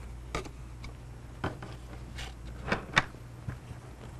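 A few light, separate clicks and taps from art supplies being handled on a tabletop while a paintbrush is wiped dry on a paper towel, over a steady low hum.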